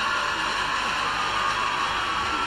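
A steady, even hiss with a faint low murmur beneath it, unchanging throughout.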